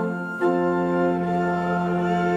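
Church organ playing sustained chords, moving to a new chord about half a second in.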